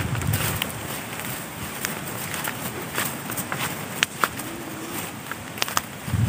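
Footsteps and rustling through grass, with scattered irregular clicks and knocks. A faint short hum comes about four and a half seconds in.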